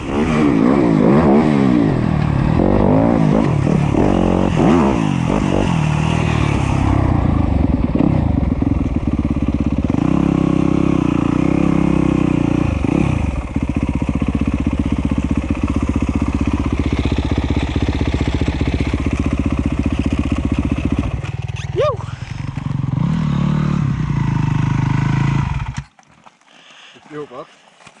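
Yamaha YZ250F dirt bike's four-stroke single-cylinder engine running under load as it is ridden, its pitch rising and falling with the throttle. Near the end the engine is shut off and cuts out suddenly.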